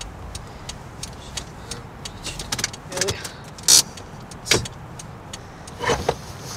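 Car engine running low at the kerb, with a string of light clicks over it. Three short, sharp hissing bursts stand out, the loudest a little past the middle and two more toward the end.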